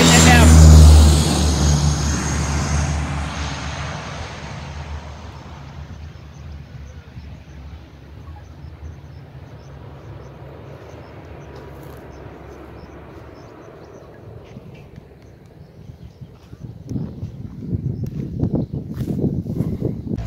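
Twin-turboprop plane running at high power down the runway on its takeoff roll as it passes close by: a deep propeller drone with a high turbine whine. It is loudest about a second in, then fades away over the next several seconds. Near the end, rustling on the microphone.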